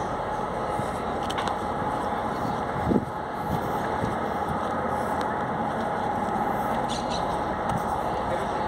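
Steady outdoor motor-vehicle noise from a street, an even continuous rumble, with a brief separate sound about three seconds in.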